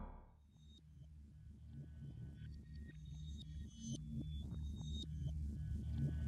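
Ambient horror film score: a low steady drone with scattered short, high ping-like tones, slowly growing louder.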